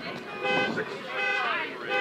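Faint car horn honking: a steady, held tone lasting about half a second, followed by faint distant voices.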